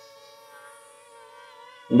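DJI Flip quadcopter's propellers and motors buzzing steadily as it hovers, the pitch wavering a little. It is carrying a 150 g payload on a line, and the motors are under strain.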